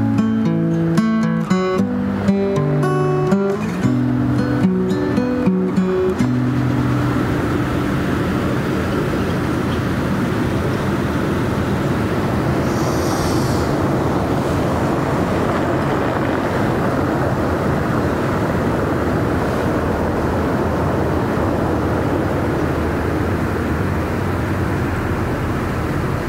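Acoustic guitar's closing picked notes for about the first six seconds, then steady outdoor noise of a harbour-side square with distant traffic.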